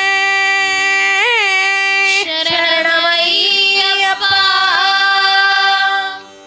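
A female voice sings a devotional bhajan in long held notes, with a quick wavering ornament about a second in and moving phrases after, over a steady harmonium drone. The singing breaks off at the very end.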